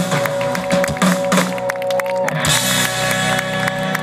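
Live band playing amplified music through a PA, with acoustic and electric guitars.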